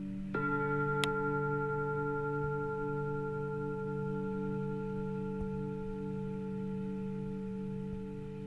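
Background meditation music of singing bowls: a bowl is struck about a third of a second in and rings on, its tones sustained with a slow wavering beat over a low steady drone. A brief high chime sounds about a second in.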